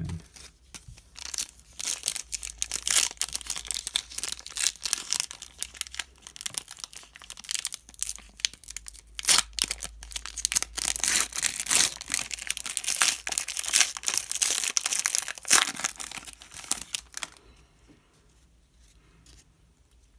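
Foil wrapper of an Upper Deck hockey card pack crinkling and tearing as it is worked open by hand. The crackling is dense and uneven and stops about three seconds before the end.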